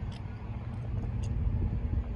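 Low outdoor rumble with a faint, steady engine hum from a distant vehicle.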